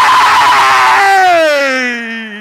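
A preacher's loud, drawn-out wordless cry through a microphone, held and sliding slowly down in pitch as it fades. In the first second it is mixed with the congregation's shouting.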